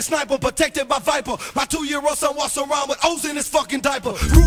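Hip hop track with a man rapping over sharp drum hits, the bass line dropped out.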